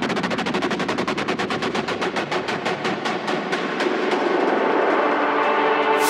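Techno build-up: a rapid roll of sharp drum hits with the bass stripped out, getting a little louder as it leads toward the drop.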